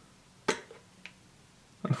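A sharp click about half a second in, then a faint tick, from handling a small plastic e-liquid dropper bottle.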